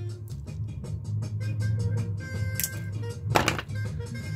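Background music with a steady bass line, and two sharp snips near the end, less than a second apart: side cutters cutting the tinned ends off a red power lead.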